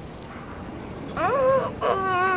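A child's high-pitched silly squeal, a rising cry about a second in, followed by a second short burst near the end.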